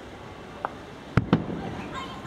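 Aerial fireworks exploding: a faint pop a little past half a second in, then two sharp, loud bangs in quick succession just past the middle.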